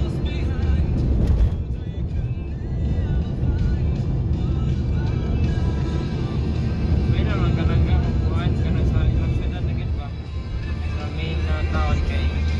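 Music with a voice plays from the car stereo over the steady low rumble of the car driving, heard inside the cabin.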